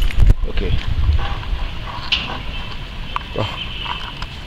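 Short spoken remarks in French ("OK", "Bah") with a low rumble on the microphone and a few clicks at the start, and a thin, steady high tone through the second half.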